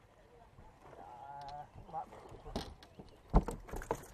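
A short drawn-out wavering call about a second in, then a few knocks and one sharp, heavy thump on the boat a little after three seconds, the loudest sound.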